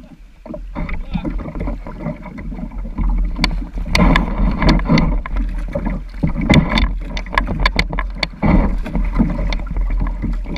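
Rippling river water splashing against the bow of a plastic sit-in kayak, louder from about three seconds in, with a run of sharp clicks and knocks in the second half.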